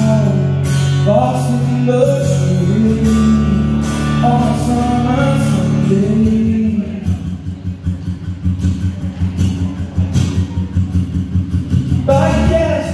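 Live solo acoustic performance: a man singing over a strummed acoustic guitar. About halfway through, the voice stops and the guitar carries on alone in a steady strumming rhythm.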